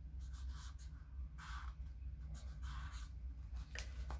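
Felt-tip marker pen writing on a notebook's paper page in a few short, soft strokes, over a faint low steady hum.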